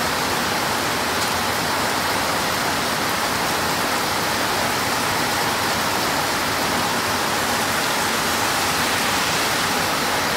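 Heavy rain falling, a steady, even hiss that does not let up.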